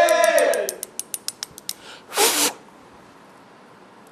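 A man's sung note trailing off at the end of a line, followed by a quick run of a dozen or so sharp clicks that thin out. About two seconds in comes a short hissing burst.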